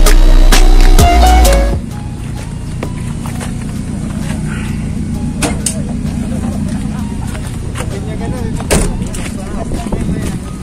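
Music playing loudly, ending abruptly about two seconds in. Then a car engine idles steadily, with a couple of sharp knocks later on.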